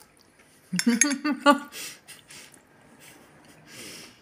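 Metal fork scraping and tapping on a ceramic dinner plate while eating, with a short vocal sound about a second in.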